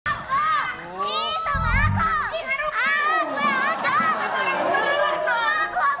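High-pitched voices squealing and shrieking, sweeping up and down in pitch without clear words, with a low thump about a second and a half in.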